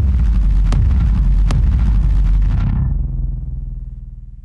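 End-screen outro sound: a loud, deep bass rumble that starts suddenly, with sharp hits about 0.8 s apart. Its high end cuts away a little under three seconds in and it fades out near the end.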